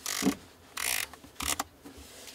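Aperture ring of a Sigma 85mm F1.4 DG DN Art lens being turned through its click stops in three short ratcheting bursts.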